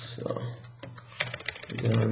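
Typing on a computer keyboard: scattered key clicks, then a quick flurry of keystrokes over half a second while text is deleted in a terminal editor. A low steady hum comes in near the end.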